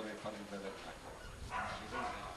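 A man's voice, fairly quiet, speaking into a microphone in short, broken stretches with a pause in the middle.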